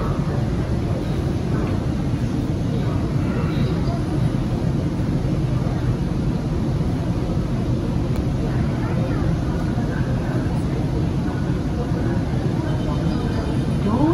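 Steady low hum inside a Bombardier Movia C951 metro car standing at a station with its doors open, with faint voices. Near the end a repeated tone begins: the door-closing chime, as the red door-warning lights come on.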